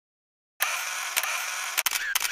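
Camera sound effect: a steady whirring hiss that starts about half a second in, broken by sharp clicks, one about a second in and a quick run of clicks near the end.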